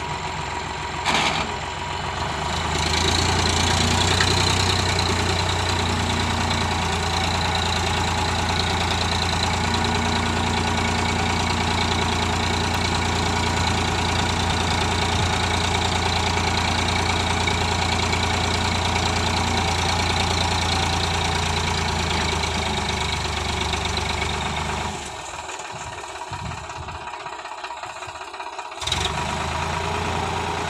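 Sonalika DI 750 tractor's diesel engine running at raised revs while its hydraulics tip a sand-loaded trailer. A sharp click about a second in, then the engine picks up and runs steadily; it drops quieter for a few seconds near the end.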